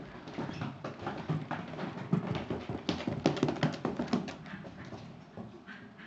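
Small dogs in dog shoes climbing carpeted stairs: a quick, irregular run of soft knocks and taps from their shod feet, busiest in the middle and thinning out near the end.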